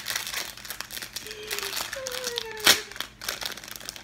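Clear plastic packaging crinkling as a makeup brush set is unwrapped by hand, with one sharp snap about two-thirds of the way through.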